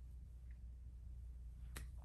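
Quiet room tone with a steady low hum, and a single short click near the end.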